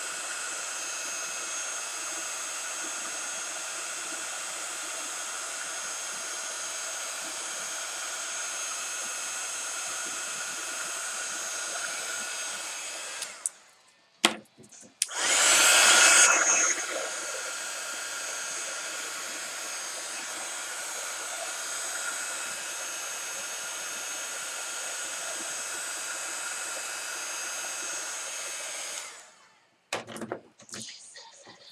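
Heat gun blowing hot air steadily to dry gesso and paint on the bottle, with a faint motor whine. It cuts off about halfway through, then starts again with a brief louder burst, and switches off near the end.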